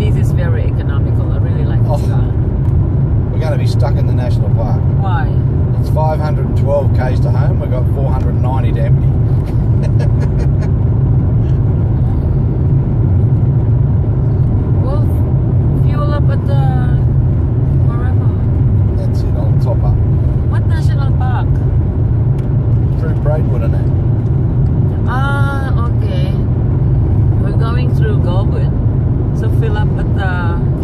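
Steady low road and engine rumble inside the cabin of a moving Volkswagen Golf TSI, with snatches of conversation over it.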